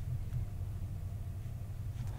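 Steady low hum of room tone with faint hiss, with no other distinct sound.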